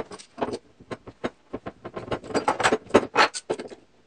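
Steel bar clamps clinking and rattling as they are handled and set onto a glue-up: a quick run of metallic clicks and clanks, thickest in the second half.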